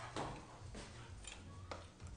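Knife slicing through a spit-roasted beef short rib on a wooden carving board: about four short, sharp crackles and taps in two seconds as the blade cuts through the crust.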